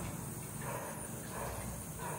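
A few soft knocks from kitchen utensils being handled, over a steady low hum.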